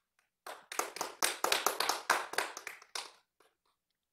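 Audience applauding: several people clapping for about three seconds, starting about half a second in and dying away before the end.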